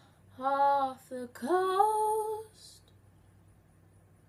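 A young woman singing a short unaccompanied phrase: a held note, a brief one, then a note that slides up and is held until about two and a half seconds in, followed by a pause.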